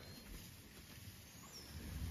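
Quiet outdoor pasture ambience with grazing cattle. Right at the end a cow begins a low moo.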